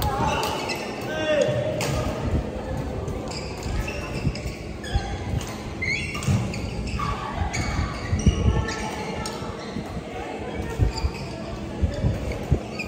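Badminton play in a large echoing hall: sharp racket strikes on shuttlecocks and thuds of players' feet on the court, scattered irregularly, with background voices.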